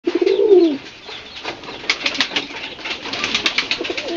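Domestic pigeon giving one cooing call that rises and falls in the first second, followed by a run of quick flutters and clicks from the pigeons, like wings flapping.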